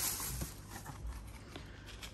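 Faint handling noise: a low rumble and a couple of light knocks as a roll of edge-banding tape is picked up off the floor.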